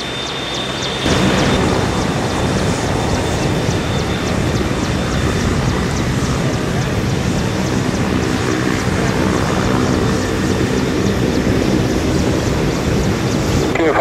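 AgustaWestland AW101 (JMSDF MCH-101) helicopter running on the ground as it taxis: a loud, steady rush of turbine engine and main rotor noise with a fast regular rotor beat. It grows louder about a second in.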